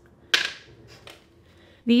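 One sharp clack, about a third of a second in, from a small jar of pigment salts being set down on a hard table.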